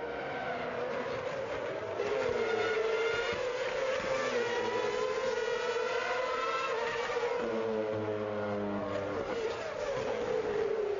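Several Formula One cars' 2.4-litre V8 engines running at high revs as they race, the whine rising and falling with throttle and gear changes.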